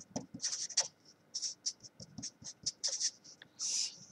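Felt-tip marker writing on paper: a quick run of short, high-pitched scratchy strokes, with a brief pause about a second in and a longer stroke near the end.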